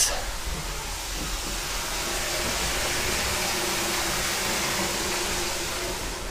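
An electric appliance running with a steady hissing rush and a faint hum, building up about a second in.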